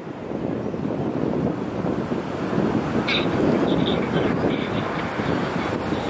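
Wind buffeting the microphone: a loud, unsteady rushing noise.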